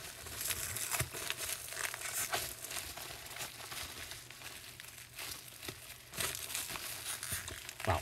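Packaging and paperback books being handled: irregular crinkling and rustling with scattered sharp crackles, as manga volumes are unpacked.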